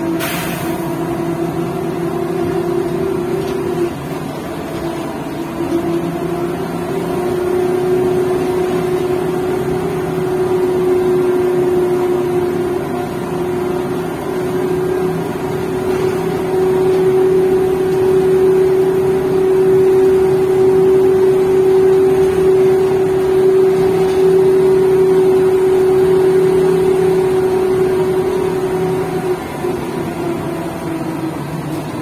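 Škoda 15Tr trolleybus heard from inside the cabin while driving: a steady electric whine with a lower hum and road rumble. It dips briefly about four seconds in, then rises slightly in pitch and holds level.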